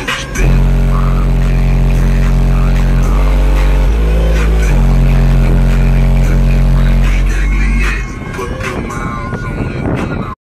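Six 18-inch car-audio subwoofers in a sealed SUV playing very loud, deep sustained bass notes, heard from outside the vehicle. The tone starts about half a second in, steps in pitch around three and four seconds, and stops about eight seconds in.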